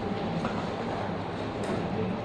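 Steady classroom room noise with a faint low hum and no clear single source.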